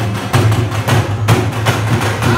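Loud live drumming: large Chinese barrel drums on wheeled stands beaten together with two-headed dhol drums, in a fast, steady beat of sharp strokes.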